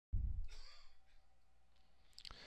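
A low bump on the microphone and a short breath, strongest in the first second, then faint steady hum.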